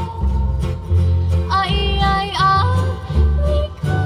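Live Hawaiian band music: strummed ukuleles and guitars over steady bass notes. About halfway through, a lead line slides up and down in pitch, in the manner of a steel guitar.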